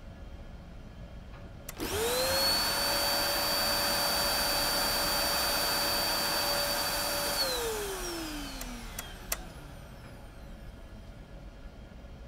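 Upright vacuum cleaner switched on with a click, its motor spinning up within a moment to a steady whine over a loud rush of air. It runs about five and a half seconds, then is switched off and winds down with falling pitch, followed by a couple of sharp clicks.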